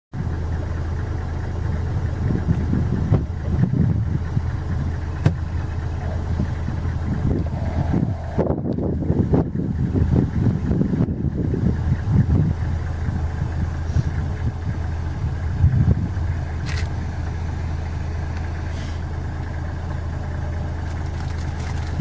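A vehicle engine idling with a steady low hum, with irregular low rumbles on the microphone.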